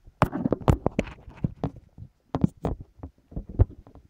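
Handling noise from the recording device as it is moved and set in place: irregular knocks, bumps and scrapes close to the microphone, with one of the loudest knocks near the end.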